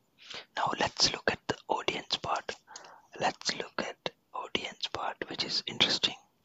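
A person whispering steadily in short phrases, the words not made out.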